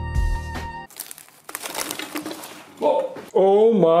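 Jazz music with held brass notes stops about a second in. A faint crackling rustle follows, then a man's loud, drawn-out, wavering exclamation, 'oh my god'.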